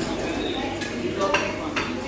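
Dining-room background of a busy buffet restaurant: murmur of other diners' voices with a couple of sharp clinks of crockery and cutlery in the second half.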